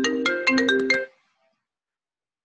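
A phone ringtone: a quick melodic run of short, bright pitched notes that stops about a second in.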